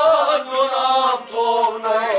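Male voice singing a melodic line of a Kashmiri Sufi kalam, the pitch wavering and shifting between held notes, over harmonium accompaniment.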